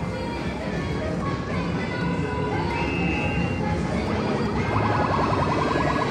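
Arcade din: music and electronic game sounds over steady crowd noise, with a fast run of short repeated electronic tones in the last second or so.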